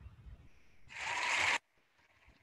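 A short burst of applause that swells for about half a second and then cuts off abruptly, leaving dead silence.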